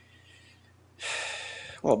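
A man's sharp breath drawn in close to a microphone, starting suddenly about a second in and fading over about half a second. Before it there is only a faint low hum, and speech begins right after it.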